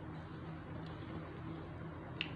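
Steady low hum of room background noise, with one faint tick a little under a second in.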